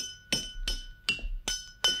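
A vase tapped like a drum: about six light strikes, roughly every third of a second, each leaving a clear high ringing tone.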